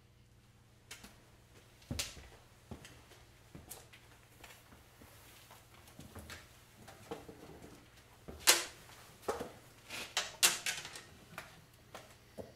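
Handling noises as two guitars are lifted off wooden and metal chairs and the players sit down: irregular knocks, clicks and scrapes, loudest in a cluster in the second half. A steady low electrical hum runs underneath.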